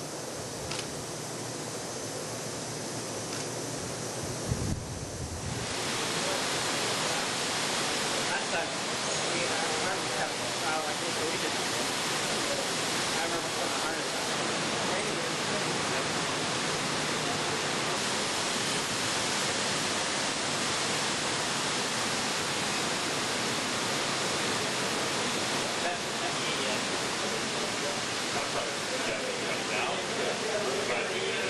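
Steady loud hiss of rushing air that starts abruptly about five seconds in, after a quieter stretch with faint voices.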